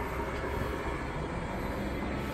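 Steady low rumbling background noise with no distinct events.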